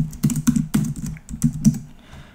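Typing on a computer keyboard: a quick, uneven run of about ten keystrokes.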